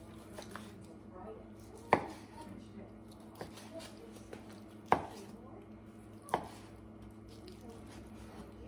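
Chef's knife slicing through smoked chicken breast on a wooden cutting board, the blade knocking sharply on the board a few times, each knock a second or more apart.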